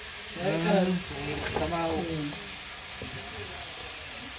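Chicken pieces sizzling steadily in a steel wok over a wood fire as they are sautéed down. A person's voice speaks briefly over the sizzle in the first half.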